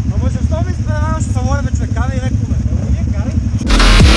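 Kawasaki KFX 700 ATVs' V-twin engines running with a steady low rumble under riders' voices. Loud electronic dance music cuts in near the end.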